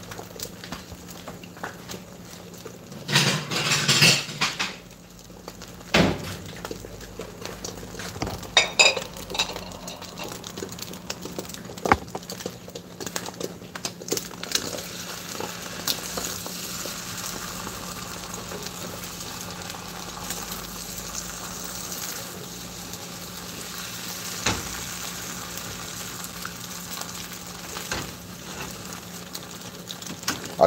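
Beaten eggs sizzling in a small nonstick frying pan, with a plastic spatula pushing and scraping them around the pan. Scattered knocks and clinks of utensils, and a louder clatter a few seconds in.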